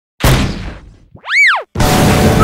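Cartoon sound effects: a sudden hit that dies away over about a second, then a short boing, a pitched tone that rises and falls. Near the end a loud, busy burst sets in.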